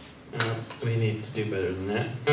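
A man's low voice says a few short words in a pause in the acoustic guitar strumming.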